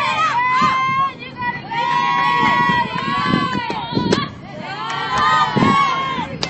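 High voices of softball players and fans calling out and cheering over one another, with drawn-out shouts throughout. A single sharp crack comes about four seconds in.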